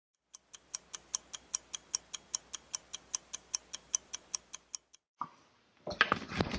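Clock ticking, about five quick, even ticks a second, stopping about a second before the end.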